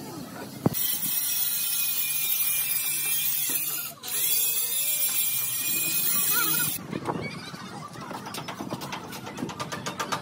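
A sharp click, then a loud steady hiss that cuts out for a moment midway and stops about seven seconds in, followed by a run of quick ticks.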